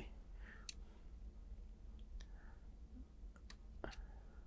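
Near silence in a small room, broken by a few faint, scattered clicks; the last and strongest comes just before the end.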